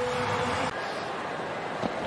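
Steady noise of a large stadium crowd at a cricket match, stepping down slightly in level about two-thirds of a second in.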